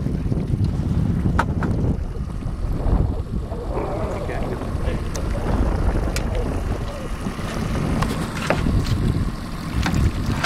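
Wind rumbling on the microphone over open water, with a few short sharp clicks and splashes as a hooked lake trout thrashes at the surface beside the boat.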